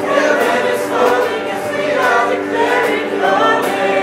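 A woman singing a gliding melody into a microphone, accompanied by sustained chords on a hollow-body electric guitar.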